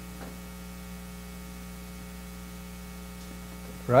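Steady electrical mains hum in the sound system, a low tone with many evenly spaced overtones that does not change.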